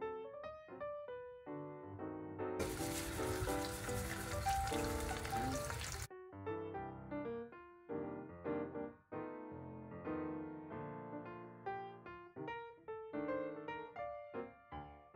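Eggs sizzling in hot oil in a stainless steel pan for about three and a half seconds, starting a few seconds in and cutting off suddenly, over piano background music that plays throughout.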